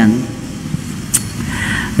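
A pause in a man's speech. A steady low background rumble continues, with a single short click about a second in and a soft intake of breath near the end as he is about to speak again.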